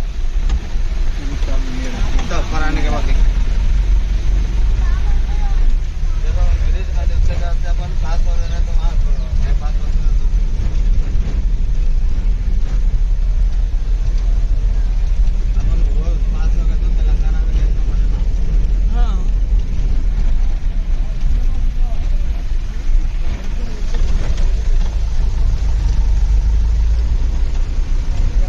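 Steady low rumble of a road vehicle driving, heard from inside the vehicle, with voices talking now and then over it.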